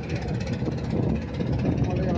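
Kitchen knife chopping fresh coriander on a wooden board in rapid repeated taps, over steady street traffic noise.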